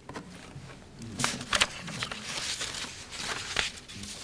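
Paper rustling and crinkling as pages are turned and shuffled on a lectern, with a few sharp crackles.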